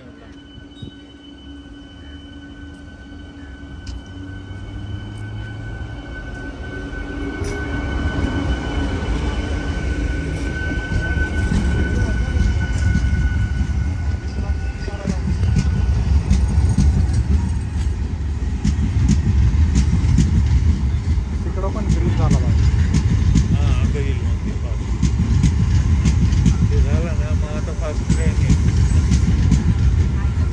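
Indian Railways multiple-unit passenger train approaching and passing close at speed. A steady high whine comes first, then the rumble and clatter of its wheels on the rails grows loud as the coaches go by.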